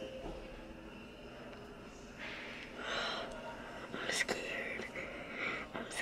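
Soft whispered speech close to the microphone, in a few short breathy phrases.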